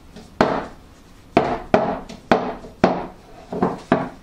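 A metal chiffon tube pan filled with batter is tapped down on a wooden board about seven times, at uneven intervals. Each tap is a sharp knock with a short ring, the usual way to settle chiffon batter and knock out air bubbles before baking.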